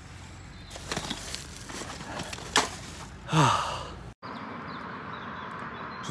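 A man's breathy sigh about three and a half seconds in, over the rustle of him walking with a backpack. After a sudden cut, a steady faint hum of distant road traffic at a roundabout junction.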